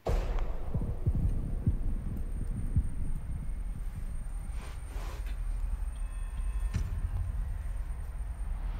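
Movie trailer sound design: a deep rumble that starts suddenly, with several heavy thuds in the first three seconds.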